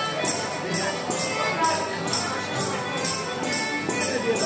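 A live folk dance band playing: diatonic accordions and acoustic guitar, with tambourine jingles striking in an even beat about twice a second.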